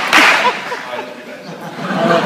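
A short, loud burst of noise at the very start, then a few brief snatches of voice.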